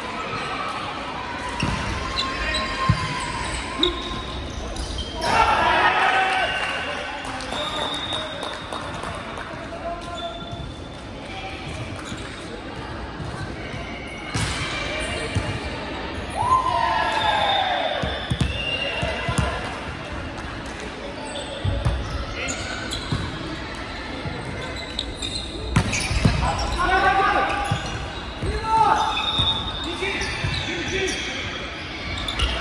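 Indoor volleyball play in a large hall: the ball is struck and bounced on the hardwood floor, with sharp hits scattered through. Players shout calls, and the sound echoes around the hall.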